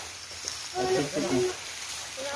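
Speech: a person's voice talking briefly, for under a second in the middle, over a faint steady hiss.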